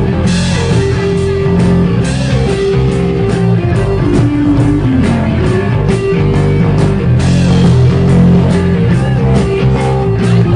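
Live rock band playing an instrumental passage without vocals: electric guitar, bass and drum kit, with a steady drum beat.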